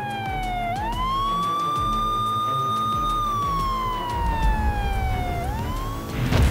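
Police siren wailing: the pitch rises quickly, holds high for about two seconds, then falls slowly and starts to rise again near the end.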